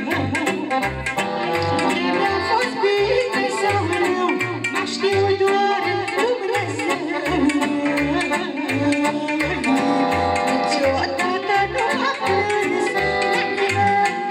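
Live party band music: an electronic keyboard (orga) with a steady bass beat, about two pulses a second, under a sustained melodic lead line.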